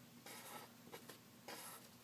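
Graphite pencil scratching faintly on drawing paper in several short strokes, as fine detail lines are drawn.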